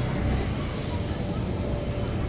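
Street traffic noise, with motorcycles riding past below: a steady low noise without a distinct engine pitch.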